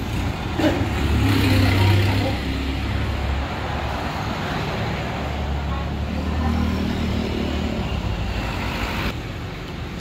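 Road traffic on a city street: passing cars and motorcycles making a steady low rumble, heaviest in the first couple of seconds.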